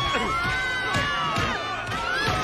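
A rioting crowd shouting and yelling, many voices at once, with a few sharp knocks among them.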